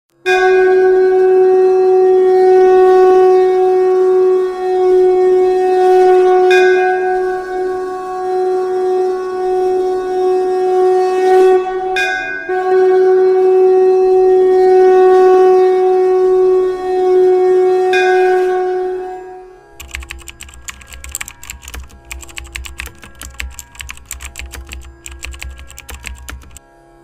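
One long, steady note from a blown horn, held for nearly twenty seconds with a short break midway. Then comes a rapid clatter of keyboard typing sounds, a typing sound effect over a low hum.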